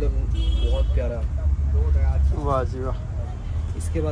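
Men talking in short phrases over a steady low rumble.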